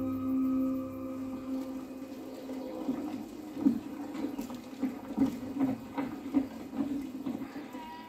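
Film soundtrack played over room speakers: a steady ambient music drone fades out about a second in, then livestock call again and again in short, irregular bursts.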